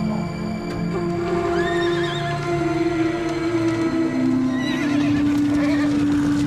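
Film score of long held notes, with a horse whinnying over it about a second in and again near the end.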